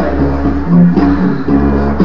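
Didgeridoo playing a low, steady drone, its tone changing rhythmically as the player shapes it.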